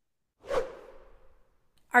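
A whoosh transition sound effect: a sudden swish about half a second in that fades away over about a second, marking the cut into an inserted promo segment.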